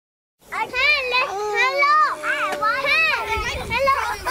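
High-pitched children's voices calling out, with widely sliding pitch, starting about half a second in after a moment of complete silence.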